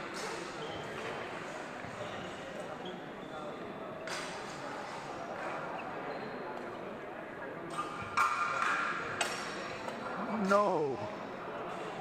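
Spectators' chatter echoing through a large sports hall, broken by a few sharp sword strikes: one about four seconds in, then a cluster around eight to nine seconds in, some ringing briefly. Near the end a voice calls out, its pitch rising and falling.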